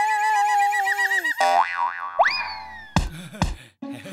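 Cartoon sound effects: a held, wavering note cuts off and gives way to a springy boing, then a whistle that rises sharply and slowly falls, ending in two thumps close together.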